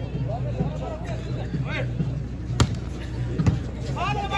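A volleyball struck twice, two sharp slaps about a second apart, as a serve is hit and the ball is played. Under it runs the steady chatter of a large outdoor crowd.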